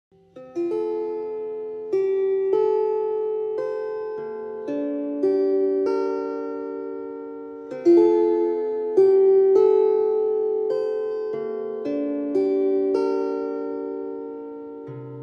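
Solo lyre (the harp-like Leier) playing slowly: plucked chords and single notes that ring and fade away, with a fresh pluck every second or so.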